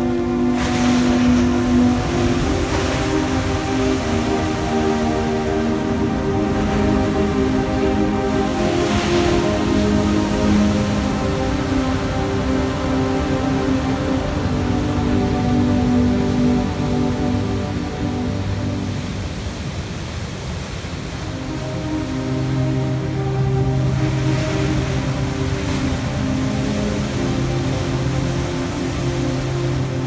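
Background music of long held notes laid over heavy, rough surf from a cyclone-driven sea. The surf swells up several times as big waves break.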